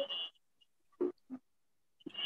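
Two short, faint vocal sounds from a person, about a third of a second apart, about a second in, heard through a video call's compressed audio.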